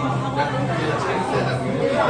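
Indistinct chatter of people talking in a restaurant dining room, with a steady low hum underneath.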